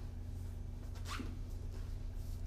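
Felt whiteboard eraser wiping across a whiteboard, with one clear swish about a second in and a few fainter strokes, over a steady low hum.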